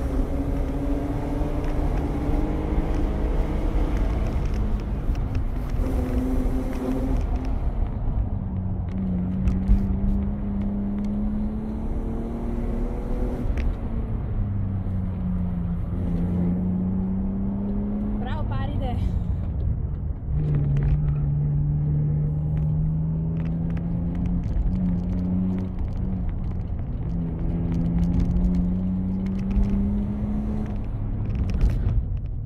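Inside the cabin, a BMW 320i E36's 2.0-litre 24-valve straight-six is driven hard. Its revs climb and then drop back several times as it shifts gears through the bends.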